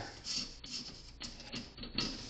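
Folded paper leaflet rustling and scraping as it is worked into the narrow gap of a metal mailbox door, with a few light clicks.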